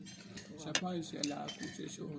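Cutlery clinking and scraping on dinner plates: a scatter of short, light clicks and clinks, with a few brief murmured voice sounds.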